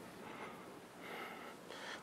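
Faint mouth breathing of a person.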